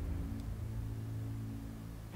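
Background film score: a sustained low drone of held notes with no melody.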